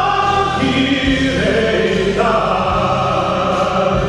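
A male baritone singing live with instrumental accompaniment, holding long notes. The voice moves to a new pitch about half a second in and again about two seconds in.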